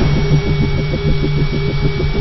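Intro logo sound effect: a low, rapid pulsing hum, about eight beats a second, over a noisy rumble, with a thin steady high tone held above it.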